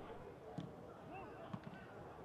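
Faint pitch-side sound of a football match: distant players' voices calling out, with a couple of soft knocks.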